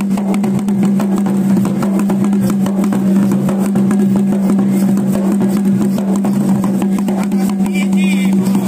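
Folk processional music of rapid drumming over a steady, unbroken droning note.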